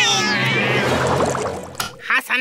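Angry cat-like yowling from a cartoon pet snail, a falling cry that ends about half a second in. A fading wash of sound follows, then a brief sharp sound near the end.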